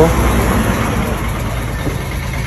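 Loud roadside vehicle noise: an engine running with a steady low hum under dense rumbling noise.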